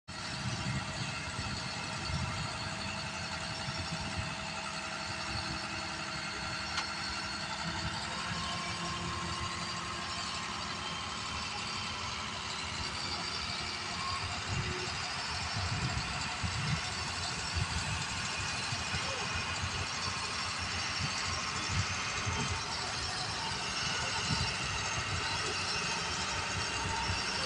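Eicher tipper truck's diesel engine running steadily while the hydraulic hoist raises the dump body and the load of fly ash slides out of the rear.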